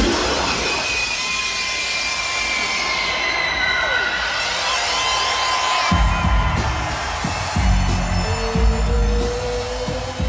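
Loud live music on a concert sound system, recorded on a phone in the crowd. For about six seconds the bass is gone and high gliding tones sit over the mix; then a heavy bass beat drops back in.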